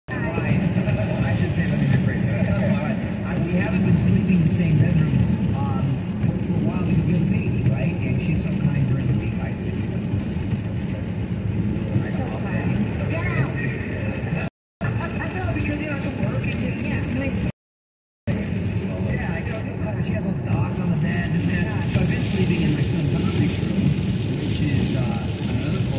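Car cabin noise at highway speed on a wet road: a steady low rumble of tyres and engine, with muffled radio talk underneath. The sound cuts out to dead silence twice in the second half, once very briefly and once for most of a second.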